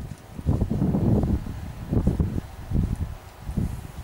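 Wind buffeting the camera microphone: irregular low rumbling gusts that start suddenly and rise and fall unevenly.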